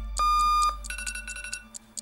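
Electronic alarm clock beeping: one loud beep about half a second long, then a quieter, slightly higher tone that fades away.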